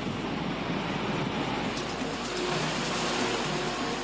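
Steady rushing noise of water and falling spray from an underwater explosion's plume over the sea, swelling slightly past the middle.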